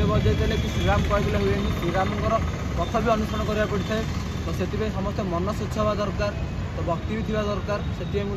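A man talking continuously over a steady low rumble.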